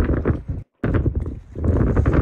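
Footsteps walking over the bridge's planked deck, a rapid run of crunching knocks that cuts out completely for a moment about two-thirds of a second in.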